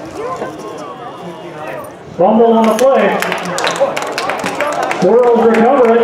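Indistinct voices shouting and calling out at a football game, with two loud, long shouts: one about two seconds in and one near the end. Sharp clicks and claps come in among the shouts.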